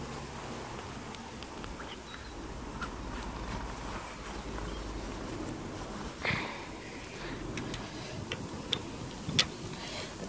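Faint outdoor background with a low rumble of distant road traffic in the first half, a brief muffled sound about six seconds in, and a few light clicks near the end.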